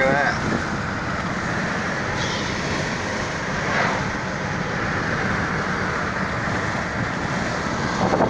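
Steady rush of road and wind noise from a car driving along a highway, with wind buffeting the microphone.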